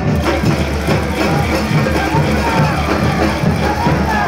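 A crowd of football supporters singing a chant together.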